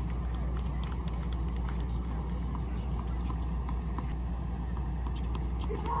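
Steady low outdoor rumble with scattered faint sharp taps and clicks, like tennis ball strikes and bounces on nearby hard courts.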